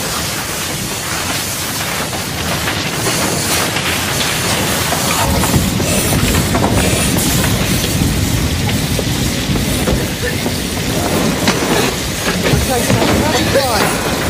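A fire roaring and crackling: a steady noisy rumble that grows heavier and deeper about five seconds in.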